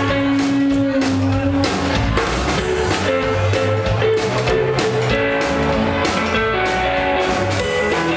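Live band playing: electric guitar lines over upright double bass and drum kit, with a steady beat.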